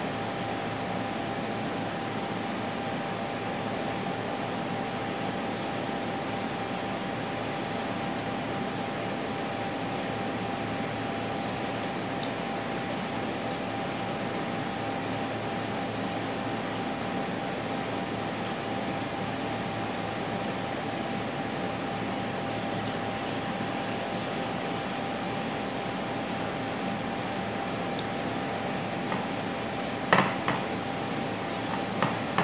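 Steady ventilation-fan noise filling a small room, constant in level, with a thin high steady hum running through it.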